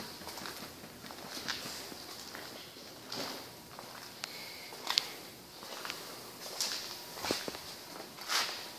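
Footsteps on a concrete shop floor, irregular soft steps about once or twice a second, over faint room noise.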